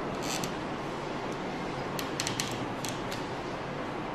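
A steady rushing noise, with a few short sharp clicks near the start and a cluster of them about two to three seconds in.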